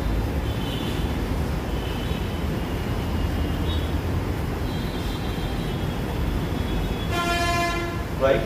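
A steady low rumble, with faint thin high tones coming and going, then a horn sounds once for under a second near the end.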